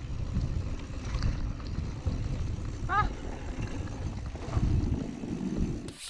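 Mountain bike rolling over a bumpy, sandy dirt trail: an uneven low rumble of tyres on loose ground mixed with wind buffeting the action camera's microphone.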